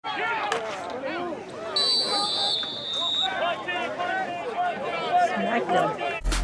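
Several voices shouting over one another from the field and sideline during a football play, with a referee's whistle blown about two seconds in for roughly a second and a half, signalling the play dead.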